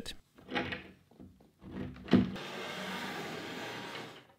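A wooden shelf board being handled and set against a wall panel: a few separate knocks and bumps, the loudest just after halfway, then a steady rushing noise to the end.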